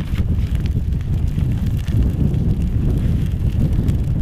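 Gusty wind buffeting the microphone: a loud, uneven low rumble that swells and dips.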